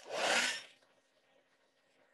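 A short rubbing scrape at the start, lasting under a second, then only a faint background murmur.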